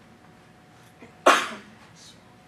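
A single sharp sneeze close to a microphone, about a second in, starting suddenly and fading within half a second.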